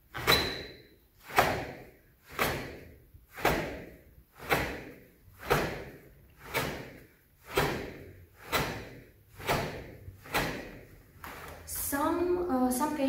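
About a dozen karate straight punches (chokutsuki) thrown one after another, about one a second, each marked by a sharp, forceful breath out from the stomach and the snap of the gi.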